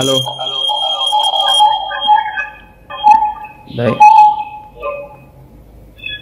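Acoustic feedback howl from an EZVIZ C1C camera's two-way-talk speaker and a phone held close beside it: steady whistling tones that ring on after a spoken 'alo' and die away in the second half. The squeal ('kêu uu') comes from the camera's very loud mic and speaker looping through the phone at close range.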